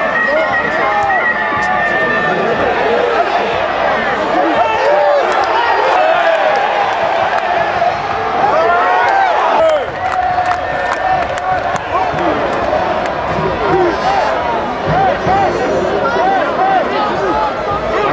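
Stadium crowd of football supporters in the stands, many voices shouting and calling out at once in a steady, loud din.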